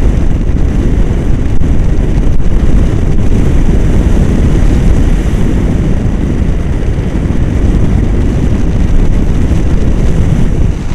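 Airflow of a paraglider in flight buffeting an action camera's microphone: a loud, steady, low rumbling wind noise with no engine in it.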